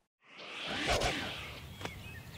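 A whoosh sound effect marking a scene transition. It swells to a peak about a second in and fades away, with a short click near the end.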